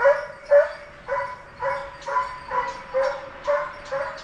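A hunting chase dog barking steadily, about two barks a second. It is baying on the trail of deer during a driven hunt, pushing the game toward the waiting shooters.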